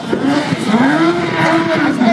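Motorcycle engine revving: its pitch climbs over about the first second, holds, then eases off slightly near the end.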